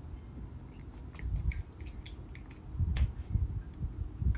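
Soft handling sounds of a plastic paint bottle and plastic paint palette on a tabletop as acrylic paint is poured out: scattered small clicks and two short spells of low thumping, about a second and a half in and again about three seconds in.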